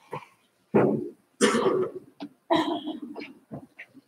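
A person coughing: three short, sudden bursts about a second apart.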